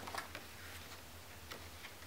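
Faint ticks and light paper sounds of a book page being gripped and turned by hand, over a steady low hum.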